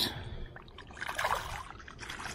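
Shallow pond water splashing as a released largemouth bass thrashes free of the hand and swims off, with the main splash about a second in.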